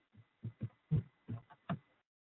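A quick run of dull, low thumps, about three a second and uneven in strength, like heavy footsteps or stamping on a wooden floor near the microphone. They stop abruptly near the end.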